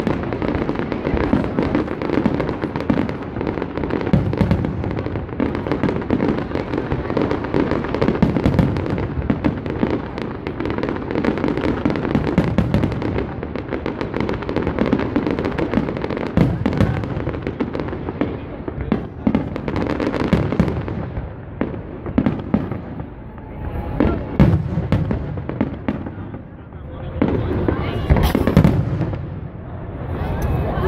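Aerial fireworks display: a dense, continuous run of bangs and crackling from bursting shells, thinning in the second half to more separate loud bangs.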